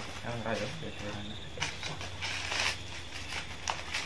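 Dry corn husks being stripped off the cobs by hand, a crackly rustle and tearing that is loudest about two seconds in, with a shorter rustle near the end. A few quiet words are spoken at the start.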